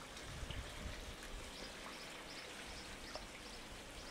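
Faint water trickling and splashing into a brick raised garden pond, with a few small drip-like ticks.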